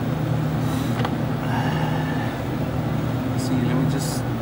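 Steady low machinery hum, with a few light clicks and rustles as the multimeter probe leads are handled.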